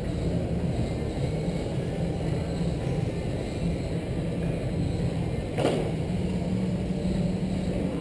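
1/10-scale radio-controlled race cars running laps on an indoor track, a steady whirring of motors and tyres, with one brief sharp noise about two-thirds of the way through.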